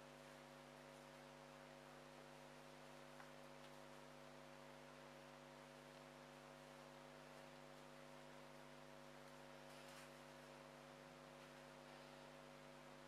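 Near silence with a steady low electrical hum, and a faint tick about three seconds in.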